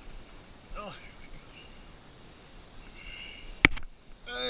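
A single sharp knock near the end, from the phone camera being handled. The rest is faint outdoor background.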